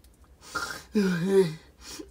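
A person's voice: a breathy gasp about half a second in, followed by a short wordless vocal sound that falls in pitch.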